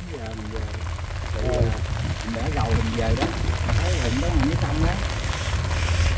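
Steady rain falling on a field of pepper plants, with wind noise on the microphone and faint voices talking quietly in the background.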